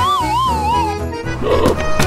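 Background music with a comic whistle sound effect whose pitch wobbles up and down while falling, lasting about the first second. A short noisy burst follows about a second and a half in.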